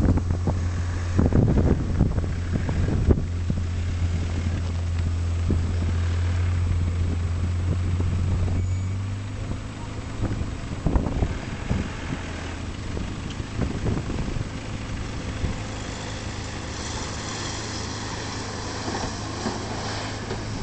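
Volkswagen Amarok pickup's engine running as it drives through soft dune sand, a steady low drone that drops away about halfway through, with wind gusting on the microphone.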